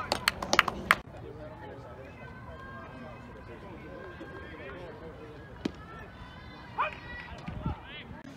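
A spectator clapping, about six quick claps in the first second. Then a quieter stretch of distant voices, with one sharp knock partway through and a short call near the end.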